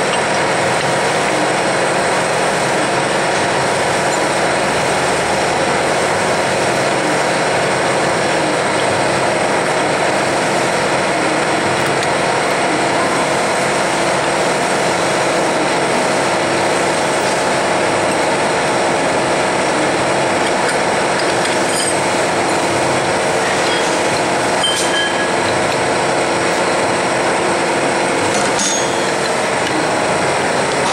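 Steady drone of running machinery, with several steady hum tones in it and a couple of faint clicks in the second half.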